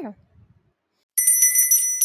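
A small, bright bell rung rapidly, several quick strikes starting just after a second in, ringing on afterwards: a bell signalling that the reading period is over.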